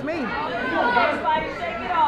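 Chatter of a small crowd of spectators talking and calling out, with a commentator's voice at the very start.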